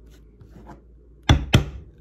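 A mallet strikes a small brass stitching chisel twice in quick succession, driving its prongs through thin veg-tan leather into a punching board to make stitch holes.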